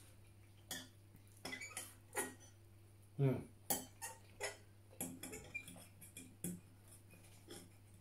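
Metal forks clinking and scraping against a bowl of noodles: a quiet, irregular run of light clicks and taps.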